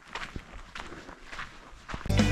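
Footsteps of a person walking steadily along a dirt trail, several steps in quick succession.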